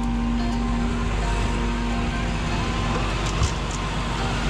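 Flatbed tow truck engine running with a steady low rumble, with a single thump about three and a half seconds in. Background music fades out over the first couple of seconds.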